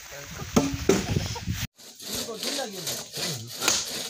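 Axes striking and splitting firewood logs, with two sharp blows in the first second and a half. After a sudden break, a hand saw works back and forth through a log in repeated rasping strokes.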